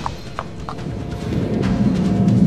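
Three hoof clip-clops of a cartoon pony, about a third of a second apart, over background music. In the second half a low rumble swells up and grows steadily louder.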